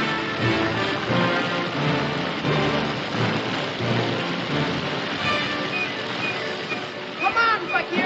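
Orchestral film score playing throughout. About seven seconds in, a few short, high cries that rise and fall sharply in pitch cut across the music.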